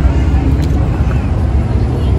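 Steady low rumble of outdoor background noise, with a faint click about two thirds of a second in.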